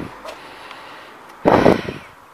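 Low outdoor background noise, then about one and a half seconds in a short, loud puff of air on the microphone lasting about half a second.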